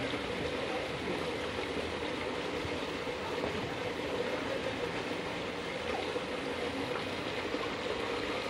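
Steady rush of running water in an otter pool, an even noise that holds the same level throughout.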